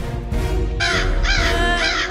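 A crow cawing three times in quick succession, starting a little under a second in, over a low music bed.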